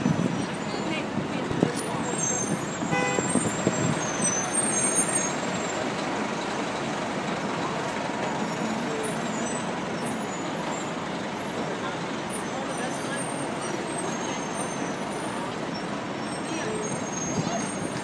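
Busy city street ambience: steady traffic noise from taxis and a bus mixed with the voices of a crowd, with a short pitched sound about three seconds in.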